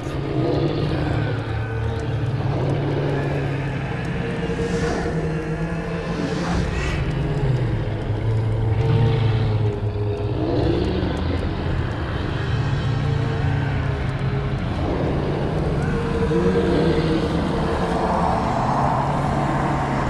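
Film soundtrack mix of a loud, continuous low rumble with held droning tones and several swelling surges, the score and effects of a tense supernatural scene.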